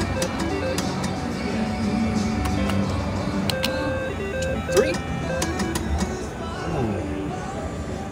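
Casino floor ambience: many overlapping slot-machine chimes and music with background chatter, while a three-reel slot machine spins, with scattered clicks.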